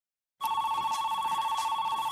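Telephone ringing: an electronic ring of two steady high tones trilling rapidly, starting about half a second in.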